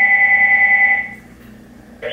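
An electronic ring or alert tone: two steady pitches, one high and one lower, sounded together with a fast flutter for about a second, then stopping.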